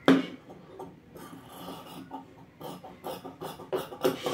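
Dress fabric rustling as it is handled on the table, then large tailor's shears cutting through the fabric in a run of short, quick snips over the last second and a half.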